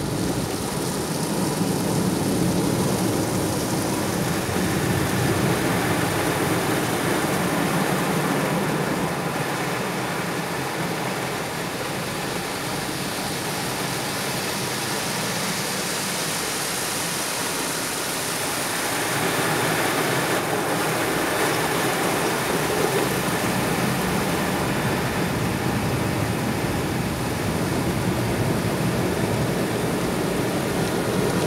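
Automatic car wash heard from inside the car: water spray and spinning brushes washing over the windscreen and body, a steady rushing noise that eases a little in the middle and builds again about two thirds of the way in.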